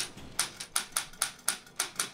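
Old Underwood No. 5 manual typewriter being typed on, its keys striking in a steady run of sharp clacks, about four a second.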